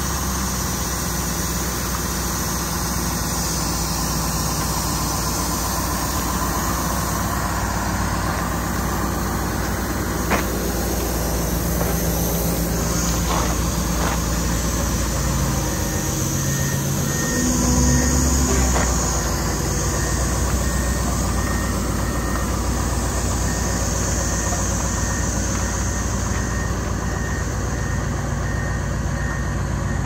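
Heavy-haul semi truck's diesel engine idling steadily, with a few light knocks and a short louder low rumble a little past halfway.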